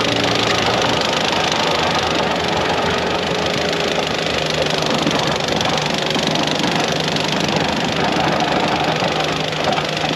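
Compact track loader's diesel engine running steadily under load as it pushes a pile of snow with a snow-pusher plow, with the blade scraping over packed snow.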